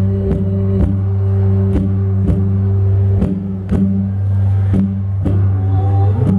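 Live Nordic folk instrumental passage: a hurdy-gurdy holds a continuous low drone, with plucked cittern strings over it and sharp rhythmic accents that fall in pairs about half a second apart.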